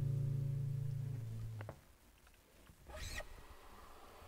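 The last held chord of a folk song on accordion and acoustic guitar rings and fades, then is cut off sharply about a second and a half in. A brief high squeak follows near the end, then quiet stage sound.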